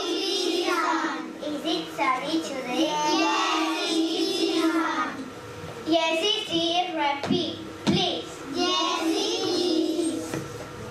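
Young children's voices singing together, with held notes and short breaks between phrases. Two dull thumps come about seven and eight seconds in.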